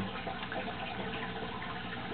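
Steady running and trickling water in a turtle tank, an even sound with no distinct events.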